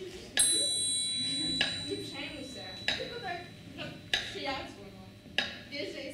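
A bright, bell-like metallic ring starts suddenly about a third of a second in and dies away over two to three seconds, with quiet voices underneath.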